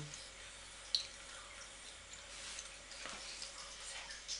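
Soft mouth clicks and lip noises from a woman silently mouthing words, over faint room hiss; the sharpest click comes about a second in.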